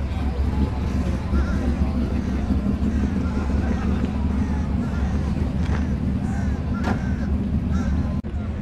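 Distant voices chatting over a steady low rumble, with one brief click near the end.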